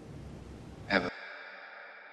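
Film soundtrack with a low rumble and hiss, broken about a second in by a brief voice sound. Then the soundtrack cuts off and a soft sustained tone with several steady pitches slowly fades.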